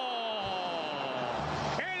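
Football TV commentator's long drawn-out shout on a shot at goal, one held vowel sliding slowly down in pitch before it breaks off near the end.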